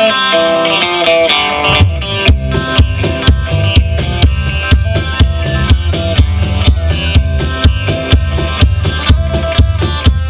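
Live rock band playing an instrumental break: electric guitar plays a fast lead line, and about two seconds in the drum kit and bass come in under it with a steady beat.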